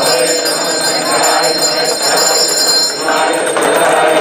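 A handheld puja bell rung continuously, its ringing stopping about three and a half seconds in, over voices chanting.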